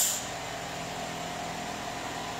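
Steady background hiss with a faint hum in a pause between speech, with no distinct event.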